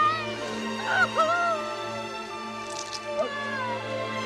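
Dramatic film score with steady held low notes, under a young woman's anguished screams and wailing cries, the strongest about a second in.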